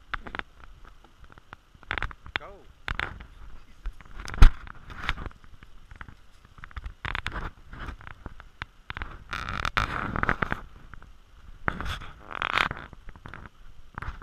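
Footsteps and scuffing of a hiker walking a rocky dirt trail, with irregular rustles and knocks close to the microphone; the loudest is a sharp thump about four and a half seconds in.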